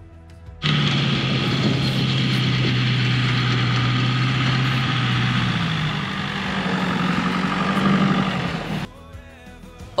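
Four-wheel-drive ute's engine working under load as it tows a caravan out of soft beach sand on tyres deflated to 20 PSI, over a steady rushing noise. The engine note steps up in pitch a little past halfway; the sound starts about half a second in and cuts off suddenly near the end, leaving background music.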